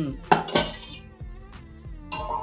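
Metal cookware and utensils clinking at a kitchen stove: two sharp clinks in the first half-second or so, then quieter clattering.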